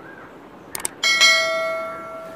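Sound effect of a YouTube subscribe-and-bell animation: a quick double mouse click, then about a second in a single bright notification bell ding that rings on and fades away.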